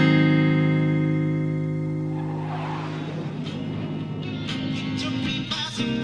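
An electric guitar chord rings and slowly fades, then more chords are strummed in a rhythmic pattern from about two-thirds of the way through.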